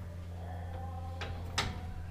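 Tools on a stubborn chassis bolt being worked loose with a socket and breaker bar: two metallic clicks about a second and a half in, the second sharper, over a steady low hum.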